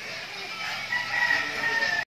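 A rooster crowing: one long call that starts about a second in and sinks slightly in pitch at the end.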